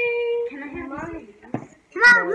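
Voices only: a high voice holds one note for about half a second, followed by quieter talk that trails off.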